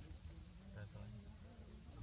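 A faint, steady, high-pitched insect chorus of crickets or cicadas, running over a low rumble.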